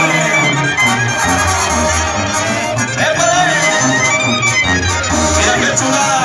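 Mexican regional band music playing: a melody with sliding notes over a bass line that moves in steady steps.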